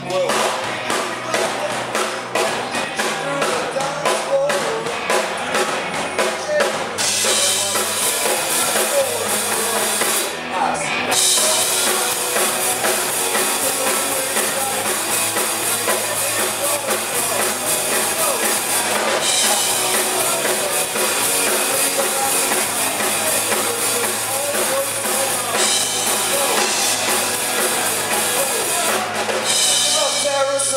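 Rock band playing live: drum kit driving a steady beat under electric guitars. About seven seconds in, the cymbals come in loud and keep going, with a short break a few seconds later.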